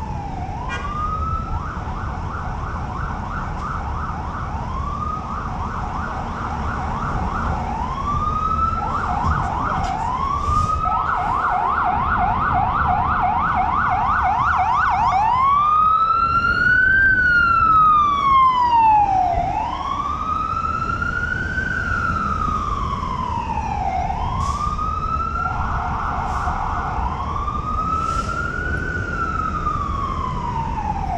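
Electronic emergency-vehicle siren switching back and forth between a slow rising-and-falling wail and a fast yelp of quick repeated sweeps. It grows louder towards the middle, then eases off a little. A steady low traffic rumble runs underneath.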